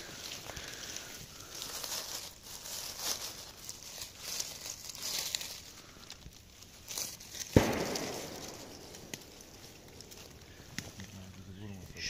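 Rustling and crunching of dry leaf litter and pine needles as someone moves in and handles mushrooms on the forest floor, with a single sharp crack about seven and a half seconds in.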